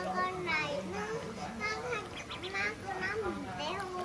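A small child's voice babbling and calling out in short, wavering sounds without clear words.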